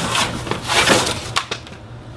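Cardboard box and plastic packaging being handled: scraping and rustling as hoses are pulled out of a shipping box, with a couple of sharp knocks in the first second and a half, then quieter.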